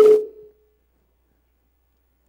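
A man's amplified voice drawing out the end of a word, cut off abruptly about half a second in, followed by near silence with only a faint low hum.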